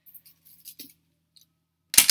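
Costume jewelry clicking and clinking lightly as it is handled on a plastic tray, then one sharp, loud clack near the end as a bracelet of beads knocks against the tray.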